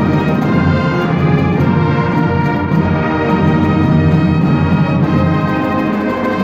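High school marching band playing: a full brass section holds sustained chords over a steady drum beat.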